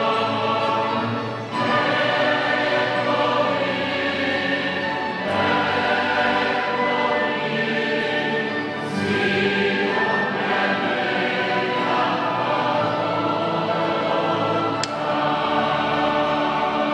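Church choir singing a hymn in long held phrases, the chords changing every few seconds.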